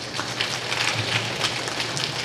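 Audience applauding, a dense patter of many hand claps that swells just after the start.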